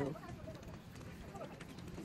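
Faint, indistinct voices of people talking, with a few light ticks.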